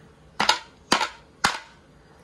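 Three sharp knocks about half a second apart: a pestle pounding chopped shallots and garlic on a cutting board to crush them.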